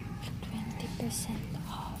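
Faint, indistinct voices over the steady background hum of a shop.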